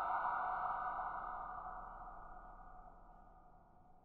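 A ringing sound-effect tail left by the echo-treated spoken story title, fading out over about three and a half seconds.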